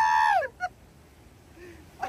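A man's high-pitched, drawn-out yell without words, held steady, then falling in pitch and cutting off about half a second in. After it, only faint quiet sounds.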